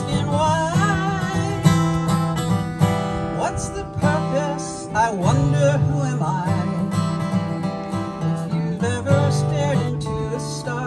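Steel-string acoustic guitar strummed steadily, with a woman singing along.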